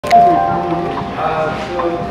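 Music playing from an iPad through a French horn used as an acoustic speaker, the sound coming out of the horn's brass bell. It is a melody of held, steady notes.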